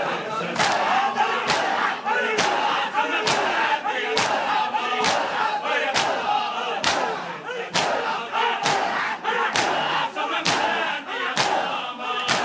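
A large crowd of men performing matam: bare hands slapping their chests in unison, a sharp stroke about once a second, under the loud chanting of many men's voices reciting a noha.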